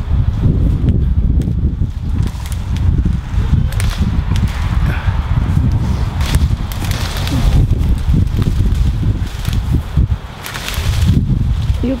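Wind buffeting the microphone in a heavy low rumble, with the crackling rustle of cassava stalks and leaves as a whole plant is pulled up and shaken.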